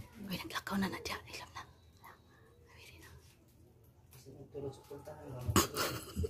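Hushed whispering voices, then a quiet pause, then whispering again with one short, sharp noise near the end.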